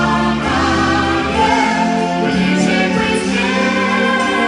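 A song performed live: voices singing together with a backing choir over a band and orchestra, holding long sustained notes.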